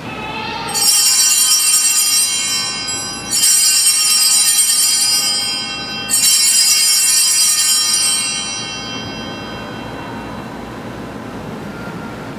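Altar bells rung three times, about two and a half seconds apart, marking the elevation of the chalice at the consecration. Each ring is a bright cluster of high chimes that dies away slowly, and the last rings out longest.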